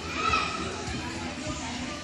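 Background hubbub of children playing and people talking in a gym, with a brief high child's voice early on.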